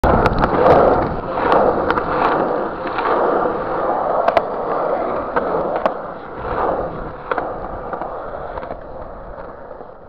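Skateboard wheels rolling on rough, cracked concrete: a steady rumble broken by sharp clicks every second or so as the wheels cross cracks and joints. It grows steadily fainter as the board moves away.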